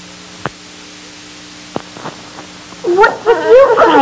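A baby fussing and crying, a wavering cry that rises and falls, starting about three seconds in. Before it there is only a steady low tape hum with a couple of sharp clicks.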